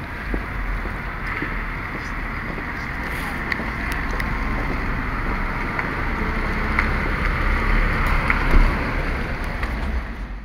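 Wind buffeting the camera microphone, a steady rushing noise with an uneven low rumble, over outdoor street noise, with a few faint ticks.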